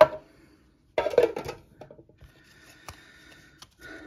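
Hands handling clear plastic packaging and a stack of trading cards: a sharp click at the start, a crinkling rustle about a second in, then faint light handling sounds.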